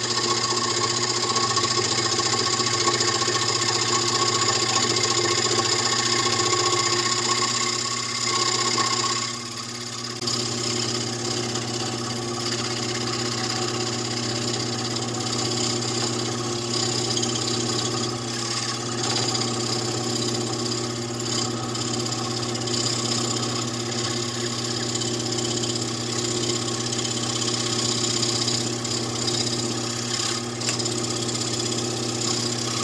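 Scroll saw running with a wide pin-end blade cutting through pine, a steady reciprocating motor hum with a constant mix of tones. About nine seconds in the sound briefly dips and one high tone stops, then the saw carries on steadily.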